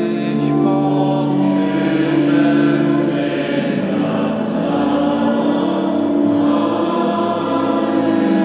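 A hymn to Mary sung in Polish by many voices together, moving in long held notes.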